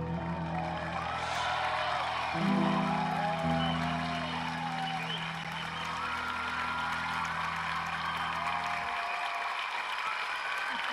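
Grand piano holding the final chords of a ballad, the low chord shifting twice and then stopping near the end, while audience applause and whoops build over it and carry on after the piano stops.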